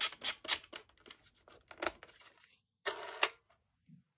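A few small handling clicks on a compact plastic film camera, then about three seconds in a short burst under half a second long as the Fuji Rensha Cardia fires its eight lenses in sequence at its fastest, 0.3-second setting.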